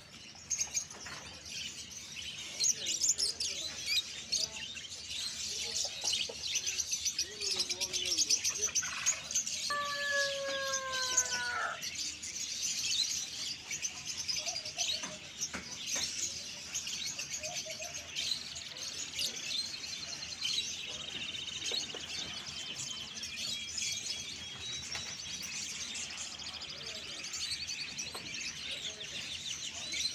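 A dense, continuous chorus of many caged budgerigars and other small birds chirping and chattering together. About ten seconds in, a single held note lasting about two seconds falls slightly in pitch.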